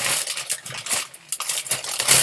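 Cosmetic products and their packaging being handled: rustling with many small clicks and clinks of items knocking together.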